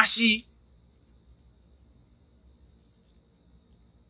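A man's voice finishing a phrase in the first half-second, then a pause of near silence with only a faint, steady high-pitched tone.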